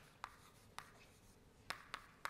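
Chalk writing on a blackboard: four short, sharp taps of the chalk against the board over about two seconds, with near silence between them.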